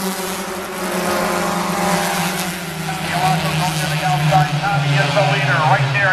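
A pack of four-cylinder stock cars running together on the oval, a steady, many-engine drone whose pitch sags slightly as the cars go by.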